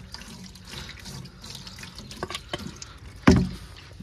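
Water from a hose pipe running and splashing against the inside wall of a styrofoam box as it is rinsed clean, with one loud thump a little over three seconds in.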